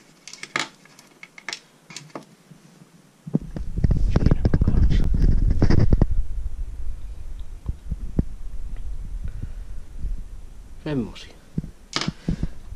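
Close handling noise on the camera microphone: a few light clicks, then from about three seconds in a sudden loud rumble and rustle with many small knocks as a hand picks up a feathered ice-fishing jig and holds it to the camera, easing to a lower rumble. A voice comes in near the end.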